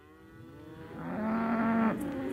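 Cattle mooing, fading in from silence, with several overlapping calls and then one long, steady moo near the end.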